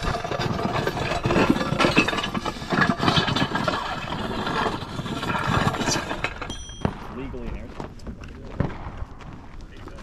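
Weight-plate sled dragged across gravel by a rope, a loud continuous scrape for about six seconds that stops as the pull ends.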